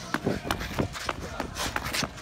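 Ice skate blades scraping and knocking on rink ice in short, irregular strides.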